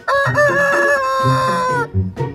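A rooster crowing once: two short notes, then a long held note that drops in pitch as it ends, just under two seconds in all.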